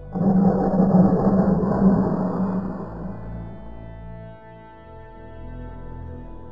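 Water rocket launching: a sudden loud rush of compressed air and oobleck (cornstarch and water) blasting out of the nozzle, fading away over about three seconds. Background music continues underneath.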